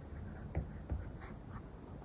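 Stylus writing on a tablet's glass screen: a few soft taps, two of them close together in the first second.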